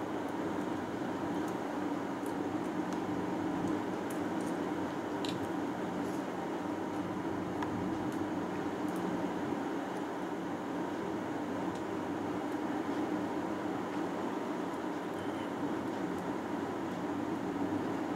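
Steady, low background hum of room tone with a few faint, light clicks from small parts being handled.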